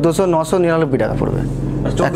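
A man talking, over a steady low hum.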